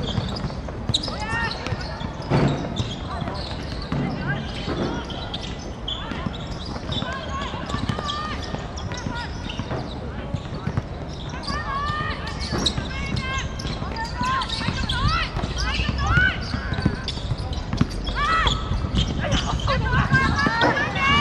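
Footballers' voices shouting and calling across an outdoor pitch during play, with a few dull thuds of the ball being kicked. The calls come thicker and louder near the end.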